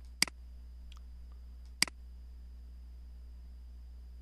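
Two computer mouse clicks about a second and a half apart, over a steady low background hum.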